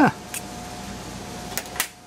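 A short spoken 'huh', then three light metal clicks as a steel combination square is set against the newly installed valve guides on a cast-iron cylinder head: one about a third of a second in, and two close together near the end. A faint steady hum runs underneath.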